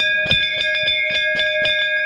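Large metal temple bell ringing after a single strike from its cloth-roped clapper. It holds several clear, steady overtones that slowly fade, with a quick patter of light clicks running over the ringing.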